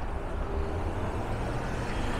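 City street traffic at an intersection: cars idling and pulling through, heard as a steady low rumble.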